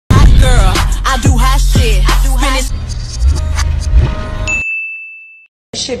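Music with vocals over a heavy bass beat, loud for the first two and a half seconds and then quieter, cutting off about four and a half seconds in. A single high electronic ding then holds for about a second.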